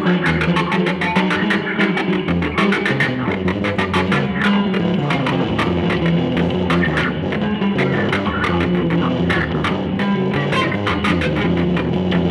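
Two electric guitars playing a samba as a duo, a busy stream of picked notes over low bass notes.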